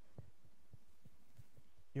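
A quiet pause: faint room hum with a few soft, short low knocks scattered through it.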